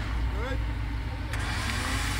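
1943 Willys MB jeep's engine idling steadily, with a faint voice briefly in the background and a hiss coming in about two-thirds of the way through.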